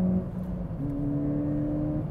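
A Ford Fiesta ST's turbocharged 1.6-litre EcoBoost four-cylinder, running a Cobb Stage 1 tune, heard from inside the cabin. It revs hard in a gear, with the pitch rising, then the sound drops away briefly in a shift and comes back at lower revs as the car pulls in the next gear.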